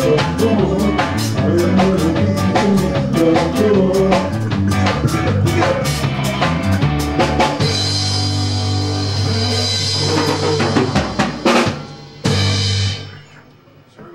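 Live band with drum kit and electric guitar playing the closing bars of a song. About seven and a half seconds in, the band holds a long chord over ringing cymbals, followed by a few drum hits. Just after twelve seconds a final struck chord rings and fades out.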